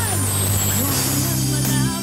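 Live pop music through an outdoor stage PA: steady bass notes under a bright hiss, which fades about a second and a half in, with the singer's voice gliding only briefly through it.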